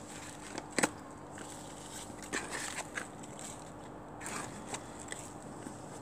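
Potting compost and a plastic plant pot being handled while a seedling is potted up: light crackling and scraping rustles, with one sharp knock about a second in.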